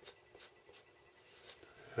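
Faint light scratching and a few soft ticks as the nozzle of a squeeze bottle of yellow wood glue is drawn along the edge of a small balsa piece, laying a bead of glue.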